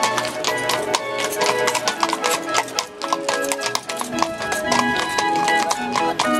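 Horse hooves clip-clopping on stone paving as a two-horse carriage passes, over barrel organ music playing a melody in held, stepping notes.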